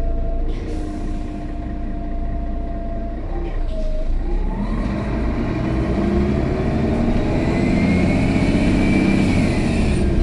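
Mercedes-Benz Citaro O530G articulated bus heard from inside the cabin: its OM457hLA inline-six diesel runs steadily, then from about four seconds in revs up as the bus pulls away, the engine note and a whine climbing steadily and getting louder. A short hiss comes about half a second in.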